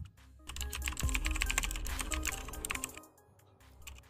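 Rapid typing on a computer keyboard: a dense run of keystrokes from about half a second in to about three seconds in, then it stops.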